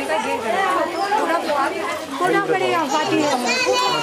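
Many overlapping voices of women and children talking and calling out at once, a steady chatter of a walking crowd.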